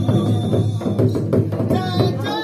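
Folk drumming on a large two-headed barrel drum beaten with a stick, with repeated strokes over a steady low drone. A voice begins singing near the end.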